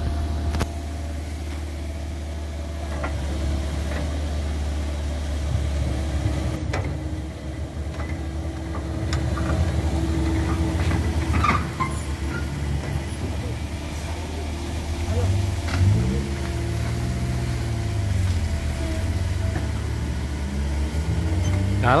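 CAT 307 amphibious excavator's diesel engine running steadily with a low hum. In the second half its pitch dips and rises several times as the engine takes hydraulic load while the boom and bucket work. A few short knocks occur.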